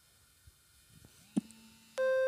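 Near silence: faint room tone with one short, soft click about one and a half seconds in.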